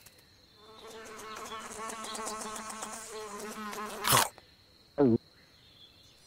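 Cartoon fly buzzing with a wavering pitch for about three seconds, cut off by a sudden loud snap; about a second later the frog gives one short croak that falls in pitch.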